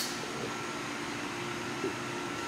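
Steady background hum and hiss with a faint steady tone running through it: room tone, like an air-conditioning unit or fan.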